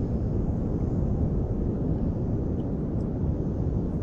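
Steady low rumble of wind buffeting the microphone, with no distinct events.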